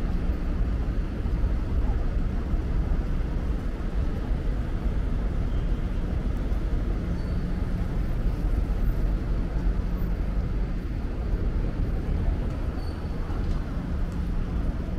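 Outdoor city ambience: a steady low rumble of road traffic, with no single sound standing out.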